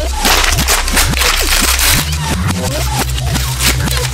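A sheet of printer paper being ripped and slashed with a knife, a loud rasping tear through the first two seconds or so. Electronic music with a heavy, stepping bass line plays throughout.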